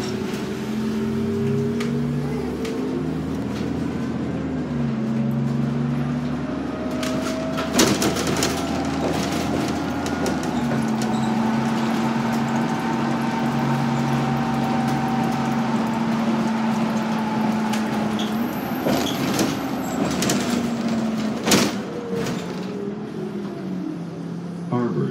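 Diesel engine of a New Flyer D40LF city bus heard from on board, its note rising and falling as the bus speeds up, shifts and slows. Two sharp knocks sound through it, one about a third of the way in and one near the end.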